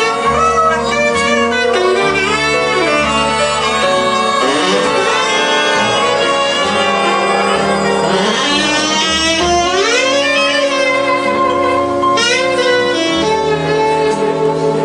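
Live big band jazz: a saxophone leads over the horn section, upright bass and drums, with quick upward runs about eight and twelve seconds in.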